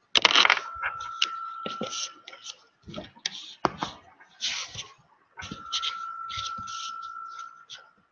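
Clicks, knocks and rustling from a webcam being handled and repositioned close to its microphone. A steady high tone sounds twice, each time for about two seconds.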